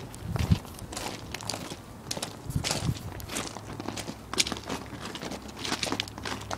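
Footsteps of people walking on rocky dirt and gravel ground, an irregular series of short crunching steps.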